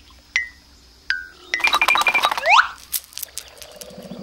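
Cartoon sound effects. Two short, bright metallic pings about a second apart are followed by a fast run of clicks with ringing tones and a quick rising sweep, then a few scattered clicks near the end.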